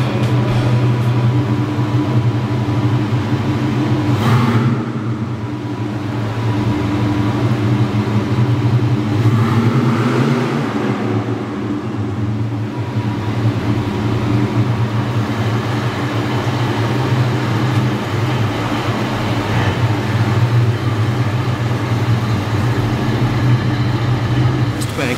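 1969 Oldsmobile 88's V8 engine running at idle, its note shifting in level and pitch a few times, about four seconds in and again around ten seconds.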